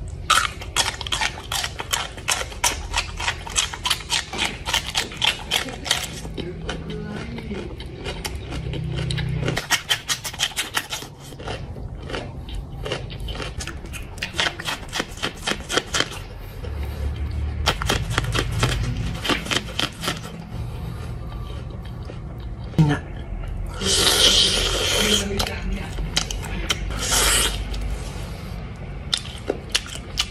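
Close-up crunching bites and chewing, first of a raw cucumber and later of corn on the cob, over background music. Two short noisy bursts come near the end.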